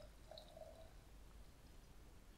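Near silence, with the faint trickle of vodka being poured from the bottle into a glass jar and a brief faint tone about half a second in.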